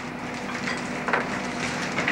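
Soft rustling and a few brief crinkles of paper and gift wrapping being handled, over a faint steady hum.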